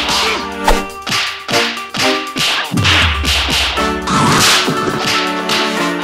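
A fast series of kung fu punch, slap and whoosh sound effects, about two strikes a second, laid over a music score with a deep pulsing bass.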